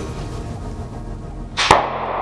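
A water-filled tape ball bursting underfoot: one sharp pop about two-thirds of the way through, followed by a short hiss.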